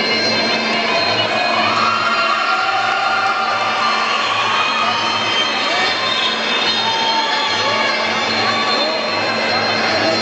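Muay Thai ring music playing loudly through the hall: a sustained, wavering pipe melody over a steady drum beat, with voices in the hall beneath it.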